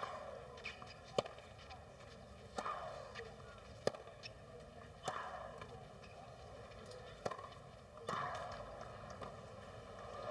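Tennis ball struck back and forth by racquets in a baseline rally: a string of sharp hits about every second and a quarter.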